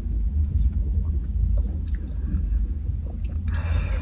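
Quiet sips and swallows of a sparkling grapefruit drink from a bottle, over a steady low rumble inside a car's cabin, with a short breathy rush of air near the end.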